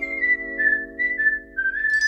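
Outro logo jingle: a whistled melody stepping up and down over a held chord, rising again near the end.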